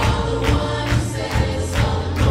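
Live worship band playing a song: several voices singing together over acoustic guitars, bass and a drum kit keeping a steady beat.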